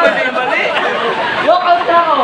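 Men's voices talking over one another with laughter.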